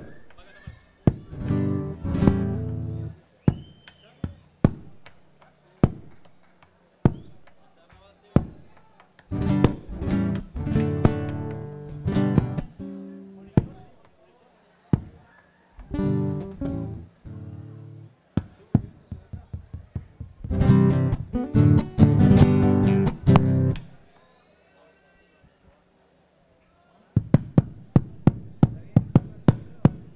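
Acoustic guitar strumming malambo chords in short phrases, with sharp percussive knocks between and under them. A quick run of knocks, about four or five a second, comes near the end.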